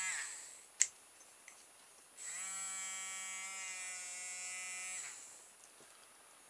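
Small electric motor of a two-AA battery-powered pet nail grinder buzzing. A short run dies away right at the start, then a click. The motor is switched on again for about three seconds, steady in pitch, then winds down.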